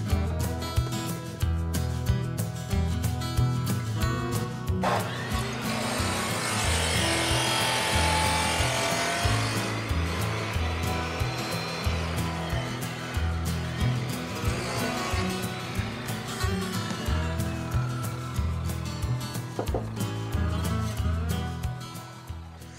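Makita abrasive cut-off saw starting up suddenly about five seconds in and cutting through 3-inch PVC pipe, loudest in the first few seconds of the cut, then winding down and fading out near the end. Background music with a steady beat plays throughout.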